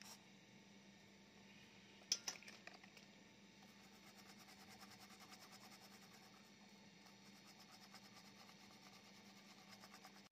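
Faint, rapid scratching of a cotton swab scrubbing a circuit board, cleaning mould-like corrosion off an IC, with a couple of short clicks about two seconds in over a steady low hum.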